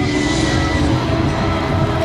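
The dance track's last held note fading out within the first second, over a steady low rumble.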